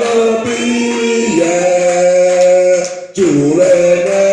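Voices singing a slow worship song in long held notes, several pitches sounding together. The notes shift about a second in, and there is a short break for breath near the end.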